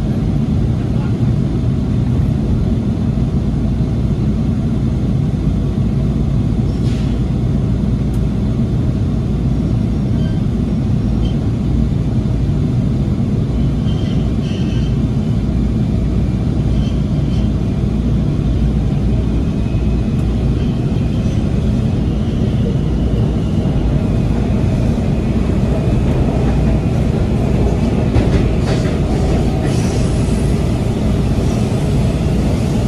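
Interior of a Breda 2000-series Metrorail car pulling out of an underground station and running into the tunnel: a steady low rumble, with a faint high whine rising in the second half as the train gathers speed.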